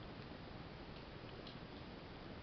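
Quiet room tone: a steady faint hiss with a few faint, irregular ticks.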